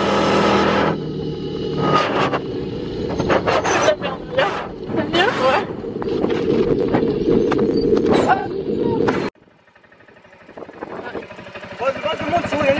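Off-road buggy engine and ride noise, a dense steady rumble, with people's voices calling out over it. It cuts off sharply about nine seconds in, and a much quieter stretch follows.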